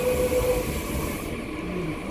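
Seoul Metro Line 9 train running, heard from inside the car: a steady rumble from the wheels and rails. A steady tone fades about half a second in, and a hiss drops away a little over a second in.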